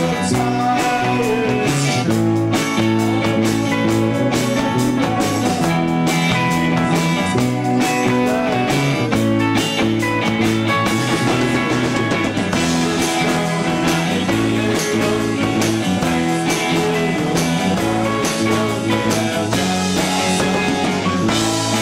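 Live rock band playing: electric guitars over a drum kit, loud and continuous.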